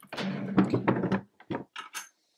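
A wooden desk drawer being pulled open: a sliding scrape with the contents rattling for about a second, then a couple of light clicks.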